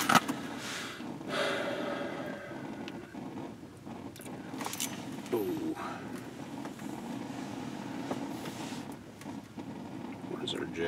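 Handling noise close to the microphone: a sharp knock right at the start, then rustling and small clicks as a small ice-fishing rod and its line are worked by hand, over a steady low hum.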